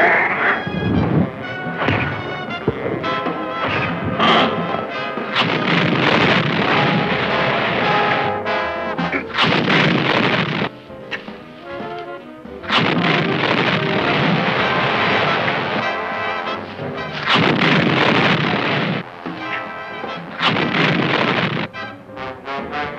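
Soundtrack music mixed with loud, rough blasts of effects noise lasting a few seconds each, several times over.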